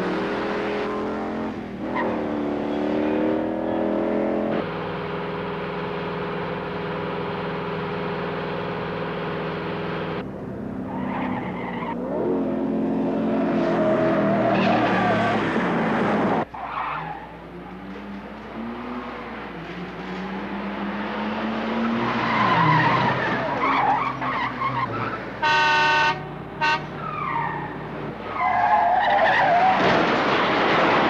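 Car chase: car engines revving hard and tires squealing, the pitch climbing and falling as the cars accelerate and corner. A horn blasts twice a little before the end, and trash cans clatter as a car smashes through them at the very end.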